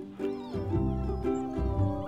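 Newborn Labrador retriever puppy squeaking and whimpering in several short, wavering high cries, over light background music.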